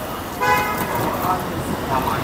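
A vehicle horn sounds once in the street: a steady, flat tone lasting about a second, fading out about halfway through.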